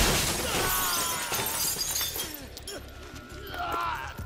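A loud crash right at the start with glass shattering and debris rattling down for about two seconds, from a film fight scene, over film score music.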